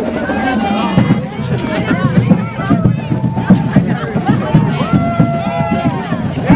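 Crowd of many voices talking and calling out over one another. A steady held tone sounds for about a second near the end.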